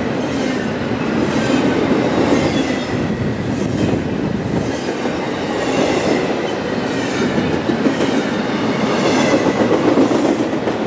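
CSX double-stack intermodal freight train passing close by: a steady rumble of steel wheels on the rails, with recurring clatter as the well cars roll over the joints.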